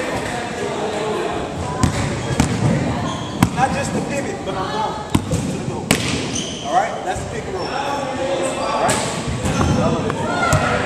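A basketball bouncing on a hardwood gym floor in a string of irregularly spaced bounces, echoing in a large hall, over a background of indistinct voices.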